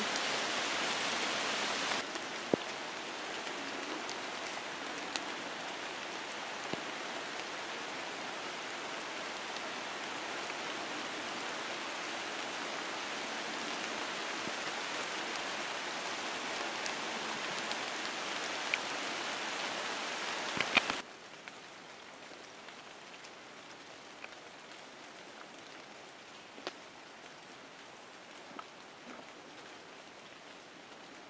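Steady rain falling on forest foliage: an even hiss with a few sharp drip ticks. It drops abruptly to a quieter level about two-thirds of the way through.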